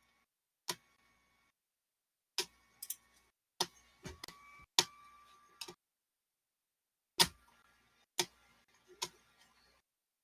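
Clicking at a computer while searching for a file: about ten short, sharp clicks at irregular spacing, some in quick pairs, with near silence between them.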